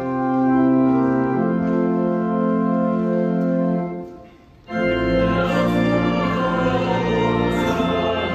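Church organ playing the offertory hymn in sustained held chords; it breaks off briefly about four seconds in, then comes back in fuller.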